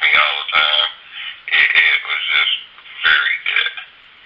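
Only speech: a man talking over a telephone line, thin and narrow in sound, in short bursts with brief gaps.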